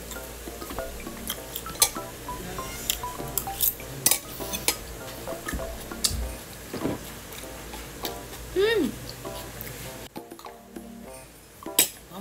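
Metal spoon and fork clicking and scraping on a plate during a meal, in sharp separate clinks, over background music that drops out near the end.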